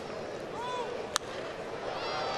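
Ballpark crowd murmur with a single sharp crack of a baseball bat meeting a pitch about a second in, the contact that sends up a high pop-up.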